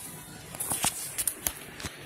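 Cardboard toothbrush box being tugged open by small hands: a scattered series of sharp clicks and crinkles of the card.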